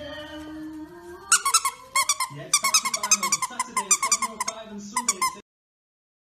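A puppy chewing a plush squeaky toy, setting off a fast run of short, high squeaks, several a second, that stops suddenly.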